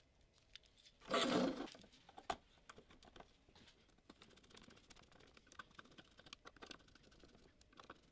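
Quiet handling noise from a cable and D-sub connector: a brief rustling scrape about a second in and a sharp click, then a run of small irregular clicks and scrapes as a small screwdriver turns the connector's retaining screws.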